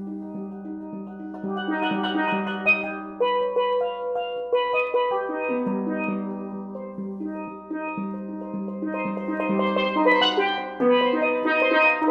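Steel pans played with mallets: a low note repeats about twice a second under a melody of struck, ringing notes. The playing grows busier and louder near the end.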